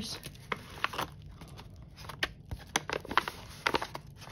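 Small plastic zip baggies crinkling and rustling as they are handled, in a string of short, irregular crackles with a few light taps.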